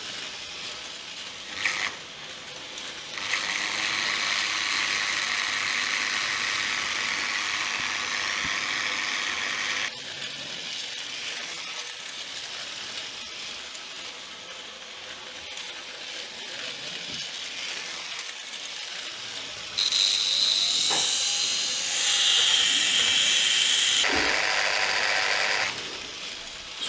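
Fine gas bubbles fizzing in an electrolytic cleaning bath, where old Märklin motor parts sit in liquid with current from a Märklin transformer. The fizz comes in stretches that start and stop abruptly. It is loudest in the last six seconds, where a thin high tone sounds over it.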